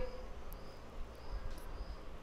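Faint insect chirping in the background, a short high chirp repeating a little under twice a second, over low room hum.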